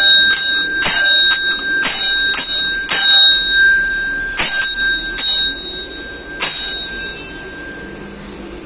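Hanging brass temple bell rung by its rope-tied clapper: about ten strikes, seven in quick succession and then three more spaced out, each ringing on with a clear, sustained tone.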